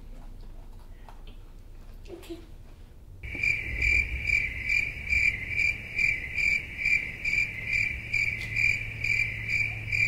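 Cricket chirping sound effect that starts suddenly about three seconds in, a steady high chirp pulsing about twice a second over a low hum. It is the comic 'crickets' cue for an awkward silence.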